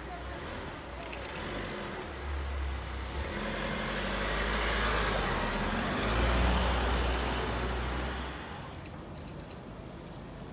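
A panel van driving slowly past at close range, its engine and tyres growing louder to a peak a little past the middle and then fading away.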